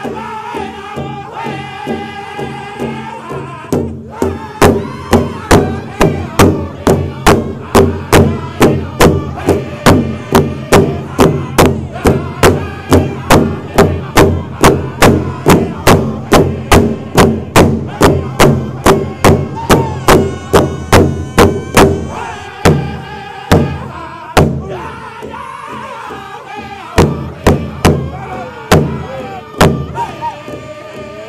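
Pow wow drum group singing a high-pitched contest song over a large shared drum beaten in a steady, loud pulse of about two and a half strokes a second. Near the end the steady beat stops and the voices carry on with only a few scattered strikes.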